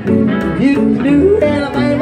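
Live country band playing an instrumental break: acoustic guitar, upright bass and electric guitar, with a lead line of gliding, sliding notes over the rhythm.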